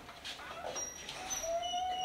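A wooden door swinging shut, its hinges giving a thin, drawn-out squeak in the second half.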